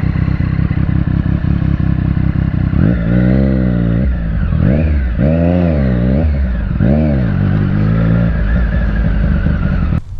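Triumph Street Triple R's three-cylinder engine, fitted with a Yoshimura exhaust, running low and steady, then revving up and dropping back about four times from about three seconds in.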